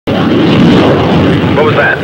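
Loud, steady roar of a military aircraft's engines that starts abruptly at the very beginning. A man's voice begins over it near the end.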